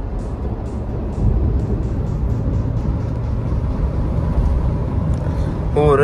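Steady low rumble of engine and road noise inside the cabin of a moving Mahindra SUV.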